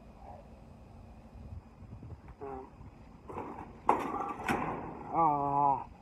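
A concrete paving slab being pried up and lifted off soil, a scraping rub with two sharp knocks about four and four and a half seconds in. A man's short held vocal sound follows near the end.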